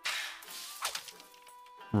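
A sudden crash with a noisy tail that fades over about half a second, then a second short crack about a second in, under faint music from the anime soundtrack.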